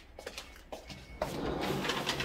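A few light clicks, then from about a second in a rising rustling, scuffing noise of movement close to a handheld microphone as the person and the camera move.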